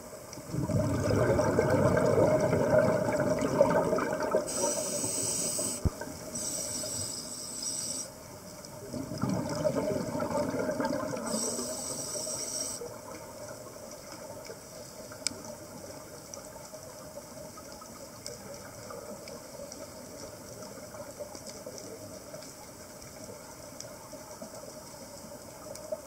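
Scuba diver breathing through a regulator underwater: two loud bursts of exhaled bubbles, in the first few seconds and again around ten seconds in, each joined by a high-pitched hiss from the regulator. After that only a faint steady background hiss remains.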